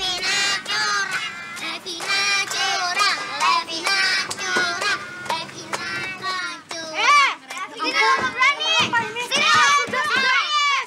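Several young children's voices chattering and shouting excitedly over one another, with no clear words.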